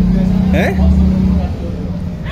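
A voice gives one short rising, questioning "he?" over a loud, steady low hum and rumble that eases off about one and a half seconds in.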